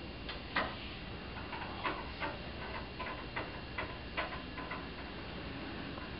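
Irregular light clicks and taps, about a dozen, the sharpest about half a second in, from a lighter and a lab gas burner being handled and adjusted under a beaker on a ring stand.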